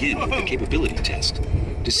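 Low rumble of a Test Track ride vehicle rolling along its track, with voices over it. The ride's recorded narration begins right at the end.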